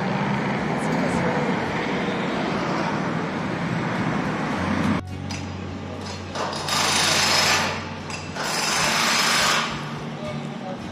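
Steady rushing outdoor noise, then two bursts of a power tool, each a little over a second long and starting and stopping sharply, from the repair work on the stone church.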